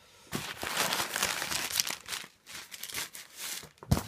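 Brown packing paper crinkling and rustling irregularly as a hand rummages through it inside a cardboard box. The crinkling starts a moment in, pauses briefly twice, and there is a soft thump near the end.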